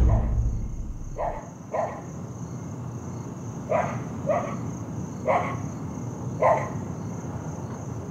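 A dog barking six short times, mostly in pairs, over a steady high chirring of crickets: night ambience.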